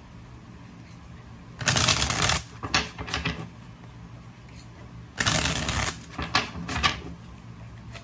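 A deck of tarot cards being shuffled by hand: two longer bursts of shuffling, about two seconds in and about five seconds in, each followed by a few short flicks of the cards.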